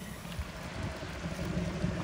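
Water running from a samovar's brass tap into a glass bottle of mulberries, under a steady low rumble of wind on the microphone.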